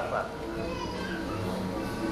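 Faint murmur of people's voices in a room, with children's voices among them.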